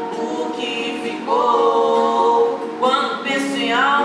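A woman singing with acoustic guitar accompaniment: a long held note about a second in, then a rising phrase near the end.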